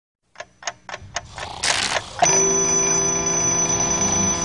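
Four clock ticks, a short rising swish, then a mechanical alarm clock ringing steadily from a little after two seconds in.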